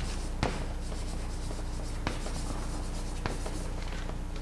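Chalk writing on a blackboard: faint scratching, with three sharp taps of the chalk against the board.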